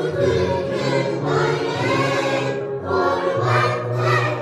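A chorus of young children singing a song together.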